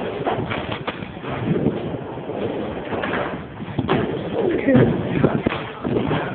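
Echoing din of a busy indoor skate park hall: steady background noise with distant voices and shouts coming and going.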